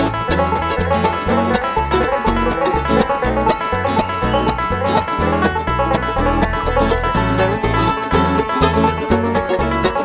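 Bluegrass string band playing live, with a banjo picking an instrumental break over acoustic guitar and a bass line that changes note about twice a second.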